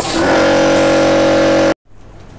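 Loud hiss of compressed air escaping from a pneumatic solenoid valve, with a steady buzz under it, cut off abruptly near the end by an edit.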